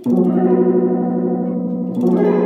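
Electric guitar played through a Lil Angel Chorus pedal with the effect switched on: a chord is struck just after the start and left to ring with a wavering chorus shimmer, and the next chord is struck at the very end.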